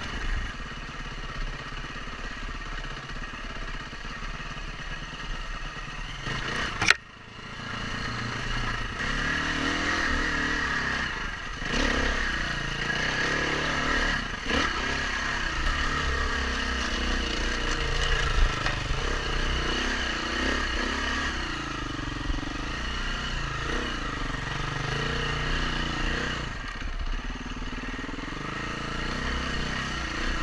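Four-stroke single-cylinder engine of a 2016 KTM 350 EXC-F dirt bike being ridden on a trail, its revs rising and falling with throttle and gear changes. A sharp click about seven seconds in, after which the sound briefly drops away.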